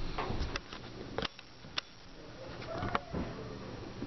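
Faint camera-handling noise with a few sharp clicks as the camcorder is zoomed in. A short hum-like sound comes about three seconds in.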